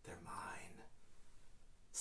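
A man's voice, quiet and whispered, speaking a soft word or two in the first half.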